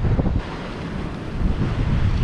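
Wind blowing across the microphone, with ocean surf washing against the rocks.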